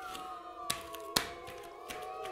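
Electronic soundscape from a Max patch: several sustained tones that drift slowly in pitch, with two sharp clicks, one about a third of the way in and a louder one just past halfway.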